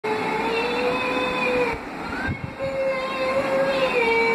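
A woman singing unaccompanied in long held notes, each sustained for over a second, with a short break near the middle.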